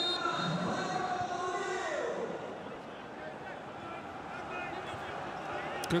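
Players' and staff's voices calling out across an empty football ground, with no crowd noise. After about two and a half seconds the calls give way to a quieter, steady pitch-side background.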